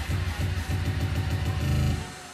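Live electronic music with a heavy, pulsing bass line through a club PA. Right at the end the full mix cuts out suddenly, leaving only quieter, sparse tones.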